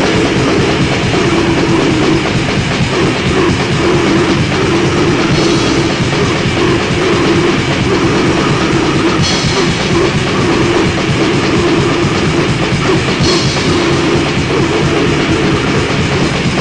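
Black/death metal from a lo-fi cassette demo: dense, loud distorted guitars and drums, with a cymbal crash about every four seconds.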